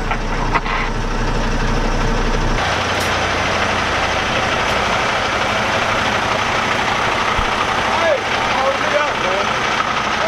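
Diesel semi-truck engines idling steadily. At first it is a low, even hum heard from inside the cab. About two and a half seconds in, it changes abruptly to the broader, hissier sound of idling trucks heard from outside, with faint voices near the end.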